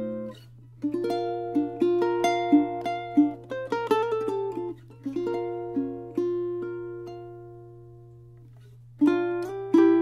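Ko'olau Deluxe Custom tenor ukulele, spruce top and myrtle body, played fingerstyle and recorded dry: picked melody notes over chords, then a chord left ringing and dying away for about three seconds before the playing resumes near the end.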